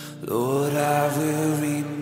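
Praise-and-worship song: a singing voice slides up into a long held note over steady accompaniment.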